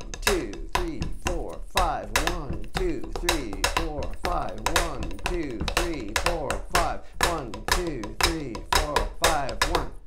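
Drumsticks striking a drum in a steady pulse, marking the beats of 5/4 time while a man counts them aloud.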